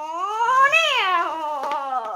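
A young boy singing one long wordless wailing note that dips low, swoops up to a peak about a second in, then slides back down.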